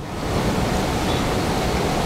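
A steady, even hiss of noise, with no speech in it, starting and stopping sharply with the surrounding talk.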